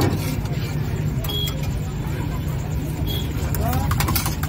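Busy food-stall ambience: a steady low rumble with background voices chattering, and a sharp click right at the start and again near the end as the omelette is worked in the pan.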